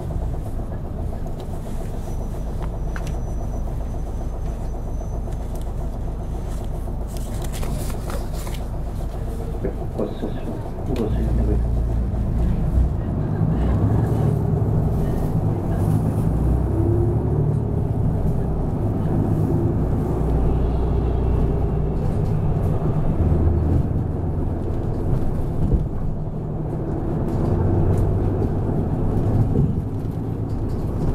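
Nishitetsu city bus running, heard from inside the cabin: a steady low diesel engine rumble with road noise. It grows louder about ten seconds in as the engine works harder.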